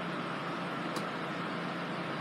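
Steady background room noise, an even hiss, with one faint brief click about a second in.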